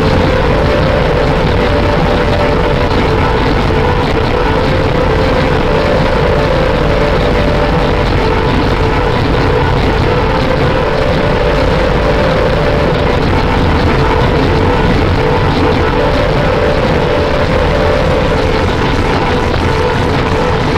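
Harsh noise music: a loud, unbroken wall of dense distorted electronic noise, with a steady drone underneath that wavers slightly in pitch.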